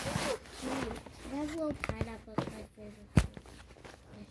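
Silicone pop-it fidget toy being handled and slid over paper, with a short rustling scrape at the start, then one sharp click about three seconds in.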